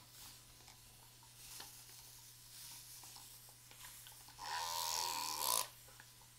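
Continuous spray bottle hissing out a fine mist of water onto braided hair for about a second near the end, with fainter misting before it.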